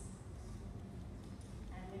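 Steady low room rumble in a large hall, with no clear distinct sound until a woman's voice begins near the end.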